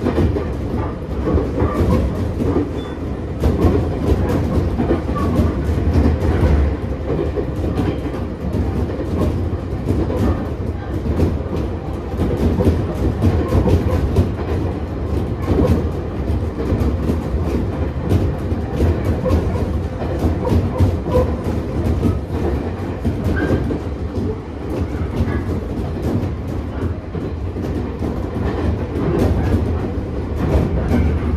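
Running sound inside a Nagano Electric Railway 8500 series electric train, the former Tokyu 8500 series, heard in the passenger car: a steady low rumble of wheels and bogies with a constant run of clicks as the wheels pass over rail joints.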